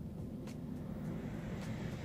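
Steady low background rumble of room noise, with a couple of faint soft ticks, about half a second in and again near the end.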